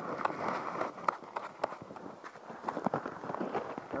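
Irregular soft thumps and crunches in snow as a freshly landed brook trout flops about on the snow-covered ice and is grabbed by hand.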